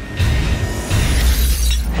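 Glass shattering in a loud crash over a deep, sustained rumble, the trailer's impact sound design; the rumble cuts off near the end.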